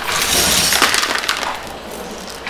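Henry canister vacuum picking up small hard debris from a carpet, the bits clattering and crackling as they are drawn up the wand over the running motor. The clatter is densest for the first second and a half, then eases.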